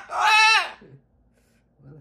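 Umbrella cockatoo giving one loud, drawn-out call of under a second that drops in pitch as it ends.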